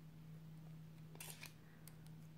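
Near silence with a faint steady low hum, broken by a few faint clicks of plastic nail-swatch sticks being handled, about a second in and again near the end.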